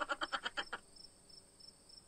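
Night-ambience sound effect: a rapid pulsing trill, about twelve pulses a second, fading out within the first second and leaving near silence.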